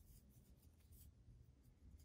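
Near silence: room tone with a faint rustle of acrylic yarn being worked on a crochet hook.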